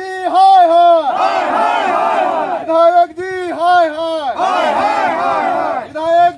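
A group of men shouting protest slogans together, a loud rhythmic chant in repeated short phrases with brief breaks between them.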